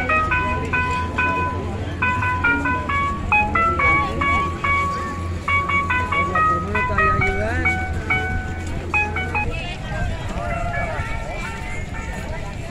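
An electronic jingle melody of clean beeping notes stepping up and down, played through a small loudspeaker with a steady low hum, the kind a street vendor's cart plays; it stops about nine and a half seconds in. Crowd chatter runs underneath.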